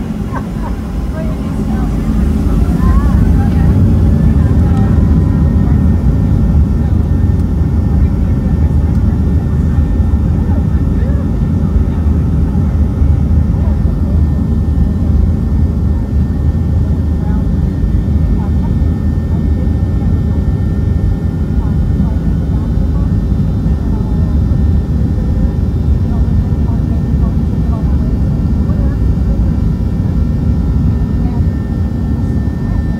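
Boeing 737-700's twin CFM56-7B turbofans spooling up to takeoff thrust, heard inside the cabin over the wing. A whine rises as the noise swells over the first few seconds, then a steady, loud, deep roar holds through the takeoff roll.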